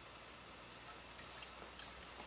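Near-quiet room tone with a few faint small clicks about a second in and near the end, from a hand handling the 3D printer's plastic and metal frame parts.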